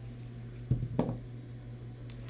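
A large foam die tumbling onto a wooden tabletop: two soft thuds about a third of a second apart, about a second in, over a steady low hum.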